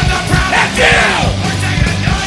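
Punk rock band playing live: electric guitars, bass and drums, with the singer yelling a line into the microphone partway through.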